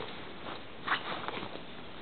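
Handling noise of a Desigual fabric handbag being moved about: faint rustling over a steady hiss, with a brief louder rub about a second in and a couple of small ticks after it.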